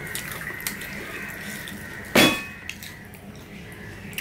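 Quiet eating sounds of rice being eaten by hand, a run of small soft clicks, with one sharp clink that rings briefly a little past halfway, as of something hard set down on the table.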